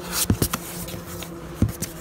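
Hands handling the flaps of a cardboard box: a few short taps and scrapes of cardboard, clustered near the start and again near the end, over a faint steady hum.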